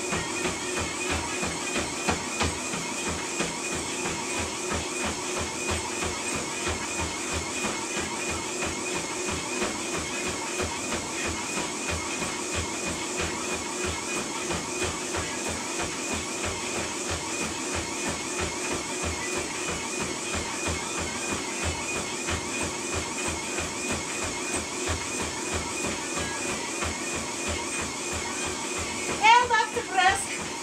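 Running footfalls on a motorised treadmill belt, an even, rapid rhythm of thumps over the treadmill motor's steady whine, which wavers with each stride. A brief louder sound with a wavering pitch cuts in near the end.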